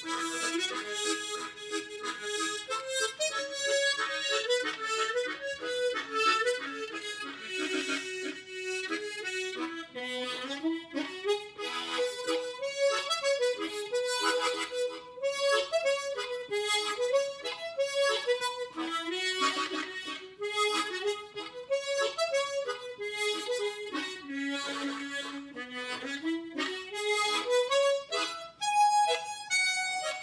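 Solo tremolo harmonica playing a slow, rising and falling melody, with short rhythmic chords under it as accompaniment. Cupped hands flutter over the instrument to add hand vibrato.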